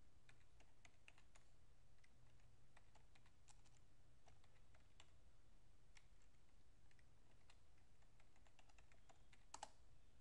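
Faint, irregular keystrokes on a computer keyboard, with a slightly sharper pair of clicks near the end.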